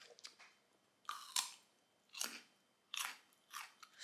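Mouth and breath noises right up against the microphone: several short, breathy smacks and puffs, spaced about half a second to a second apart.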